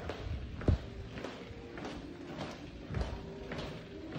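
Footsteps of sneakers on a hard tiled floor, a step about every 0.6 seconds, the loudest one near the start, over faint background music.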